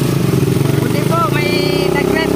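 Motorcycle engine of a Philippine tricycle (motorcycle with sidecar) running steadily under way. A person's voice comes in briefly over it in the second half.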